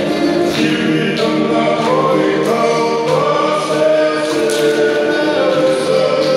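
Group of voices singing together in harmony, with long held notes that step slowly in pitch, accompanying a Tongan dance, and a few sharp beats every couple of seconds.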